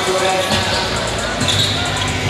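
Basketballs bouncing on a hardwood gym floor during layup warm-ups, over a steady din of voices and music in the gym.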